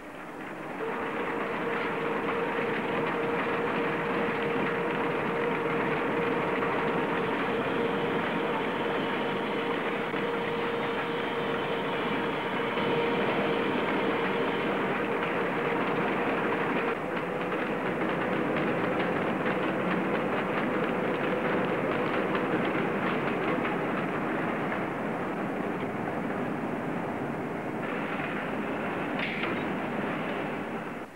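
Steel strip mill coiler winding rolled steel strip into a coil: a steady mechanical rush with a constant hum running through it. The sound shifts slightly about 17 seconds in and again near the end.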